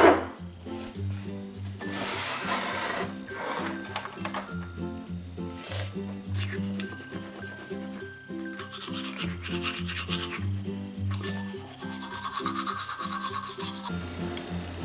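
Background music with a steady bass line and a short loud hit right at the start. Over it comes scratchy rubbing at times, including a few seconds of a toothbrush scrubbing teeth past the middle.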